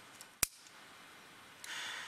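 A single sharp click about half a second in, then a short hissing breath from the climber near the end, over faint background hiss.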